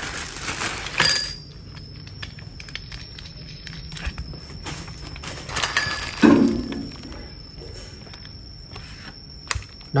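Parts of a cordless grass trimmer being handled as its handle is fitted onto the shaft: bursts of rustling and clattering of plastic parts, and a sharp click near the end. A faint steady high whine runs underneath from about a second in.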